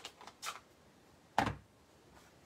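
A few light clicks of plastic stamping supplies being handled, then a single solid knock about one and a half seconds in as one is set down on the craft table.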